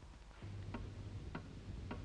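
Clock ticking slowly, three ticks a little over half a second apart, over a low steady hum that comes in about half a second in.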